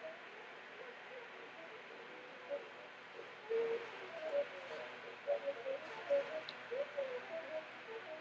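A wet lapidary grinding machine running steadily, a low even noise with scattered short, faint pitched squeaks or hoots.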